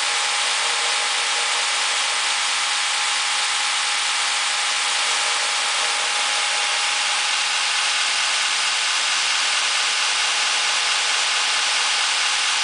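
Electric belt grinder running steadily with no work on the belt: an even hiss from the belt and motor with a faint steady tone, unchanging throughout.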